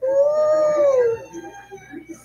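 A long, howl-like wailing note held for about a second, its pitch rising slightly and then falling away, followed by quieter sounds.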